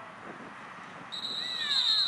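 A referee's whistle blows one long, high, steady blast starting about a second in, signalling the play dead after the tackle. Voices shout alongside it.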